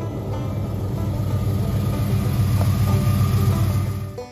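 A 1969 Dodge W100 pickup driving toward the listener, its engine and exhaust rumble growing louder as it nears, then cut off abruptly at the end.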